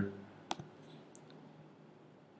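A single sharp computer mouse click about half a second in, then a fainter short tick, over a faint low steady hum.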